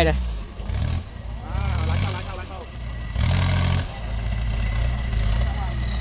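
Off-road racing vehicle's engine revving in repeated bursts under load as it climbs a steep slope. The loudest burst comes a little past the middle, and the engine then keeps up a steadier rumble.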